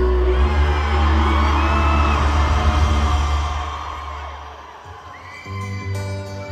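Arena crowd cheering and whooping over a deep sustained bass drone, which fades down about four to five seconds in. Near the end a new song starts with a steady sustained chord.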